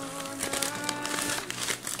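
Plastic packaging crinkling and rustling as a plastic shipping mailer is opened and its plastic-wrapped contents are pulled out, over background music with held notes.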